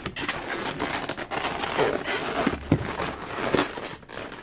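Latex twisting balloons squeaking and rubbing against each other as a long balloon is wrapped and twisted by hand, with a few short squeaks in the second half.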